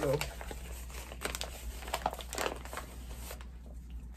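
Paper crinkling as it is handled, in a run of short, crackly bursts that ease off after about three seconds.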